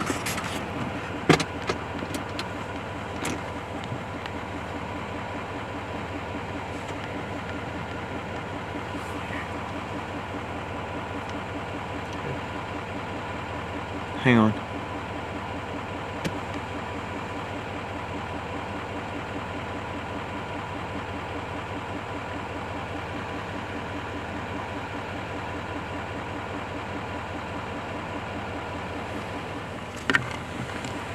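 Truck engine idling steadily. There are a few sharp clicks and knocks in the first few seconds, and a brief loud sound falling in pitch about 14 seconds in.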